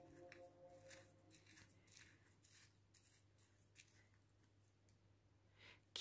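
Near silence, with a few faint, scattered scrapes and clicks of a small plastic spoon pressing steeped herbs down in a metal tea strainer over a glass mug.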